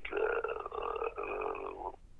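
A held, muffled voice-like sound coming through a telephone line, steady for nearly two seconds, then cut off just before the end.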